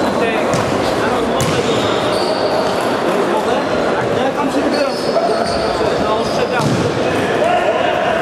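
Futsal being played in a reverberant sports hall: indistinct voices of players and spectators, the ball being kicked with sharp thuds about a second and a half in and near six and a half seconds, and short high squeaks of shoes on the court floor.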